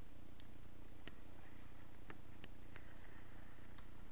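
Paddling a small boat: irregular light clicks and taps of the paddle and water against the hull, about six in four seconds, over a steady low hum.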